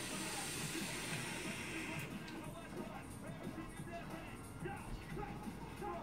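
Steady hiss of a high-wattage e-cigarette hit for about the first two seconds, then fading, over faint background music.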